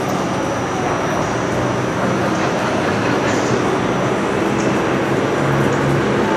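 Steady, fairly loud outdoor background noise: an even rushing din with no distinct events and a faint steady high whine above it.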